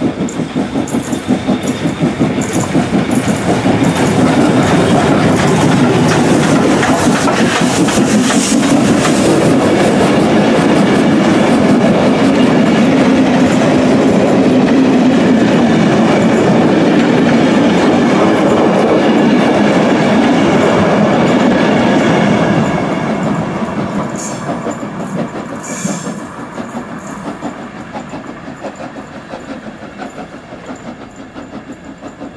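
Steam locomotive No.85 Merlin, a GNR(I) compound 4-4-0, passing close with its exhaust chuffing, followed by its coaches clattering over the rail joints. The sound is loud through the middle and fades away over the last several seconds as the train goes off.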